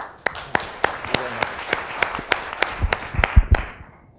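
Audience applauding, with individual claps standing out sharply; the applause thins and fades out shortly before the end, with a few low thumps about three seconds in.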